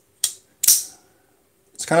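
Buck Marksman folding knife clicking as its blade is worked closed: a light click, then a sharper snap about half a second later.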